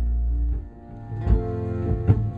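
Live band music in an instrumental gap between sung lines: acoustic and electric guitars over a sustained low note. The sound dips about a third of the way in, then the band comes back in with a hit.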